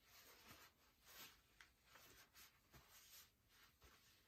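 Near silence: faint room tone with soft, irregular rustles.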